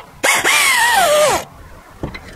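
Pneumatic air ratchet running on a brake caliper bolt: a burst of air hiss with a motor whine that falls steadily in pitch as the tool slows under load, lasting about a second before it cuts off.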